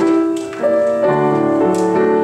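Grand piano playing a slow postlude in sustained chords. About half a second in, the notes thin out briefly with a paper rustle from a page turn, then the chords resume.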